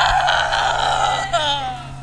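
A boy's loud, strained scream held for about a second and a half, trailing off in falling pitch near the end.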